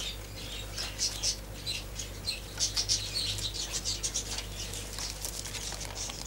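Small caged birds chirping in quick, irregular high twitters, over a low steady hum.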